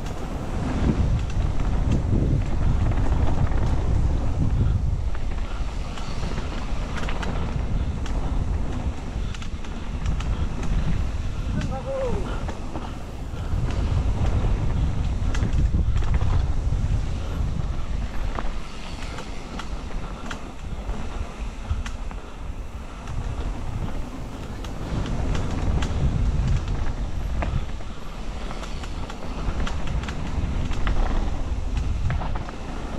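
Mountain bike descending a rough dirt trail, heard from a helmet-mounted camera: heavy wind buffeting the microphone and tyres rolling over dirt, with frequent knocks and rattles from the bike over bumps. The rush swells louder on the faster stretches.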